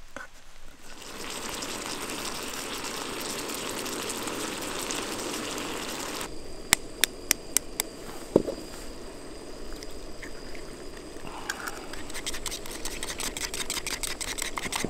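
A steady hiss for the first few seconds that cuts off, then a few sharp clicks and a single knock as an egg is cracked. From about twelve seconds in, the fast, even ticking of an egg being beaten in a metal camp cup.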